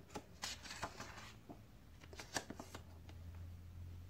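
Paper pages of a picture book being turned by hand: a scatter of soft rustles and light clicks over a few seconds.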